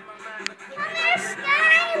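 A young child's high-pitched voice calling out in a wavering, sing-song way, getting louder through the second half, amid children at play. Two sharp clicks come in the first half second.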